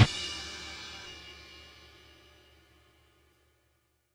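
A rock band's song ending on a final hit: the full band stops abruptly, and the cymbals and instruments ring on, fading away over about two seconds into silence.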